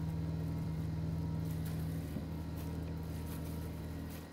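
Steady low electric hum of a preheating kitchen oven's motor, running without change; the oven is described as a bit noisy.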